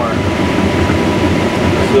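Claas Lexion 750 combine heard from inside its cab while harvesting corn under load: the engine, at about 1,940 rpm, and the threshing machinery make a steady, loud mechanical rumble, with a faint steady high whine.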